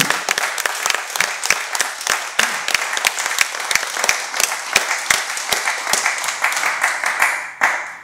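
Applause from a small audience: many pairs of hands clapping at once, with single claps standing out. It stops abruptly shortly before the end.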